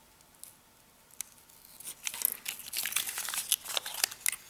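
Double-sided tape being peeled up from its strip on cardboard: quiet at first, then a run of small crackles and crinkles from about two seconds in.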